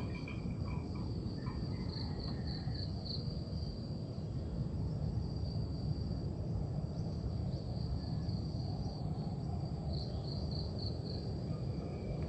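Insects trilling steadily on one high pitch, with two short stretches of quicker pulsing, over a low steady rumble of background noise.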